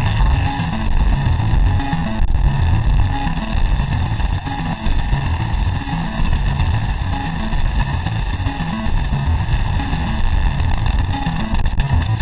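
Studiologic Sledge virtual-analogue synthesizer, with its Waldorf sound engine, played live: a fast, busy run of low notes under a steady high band of overtones, while a panel knob is turned to reshape the sound.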